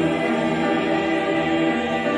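A mixed church choir of men and women singing a Thanksgiving anthem in harmony, holding sustained chords.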